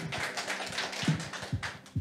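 Light, scattered clapping from a small audience: many quick soft claps.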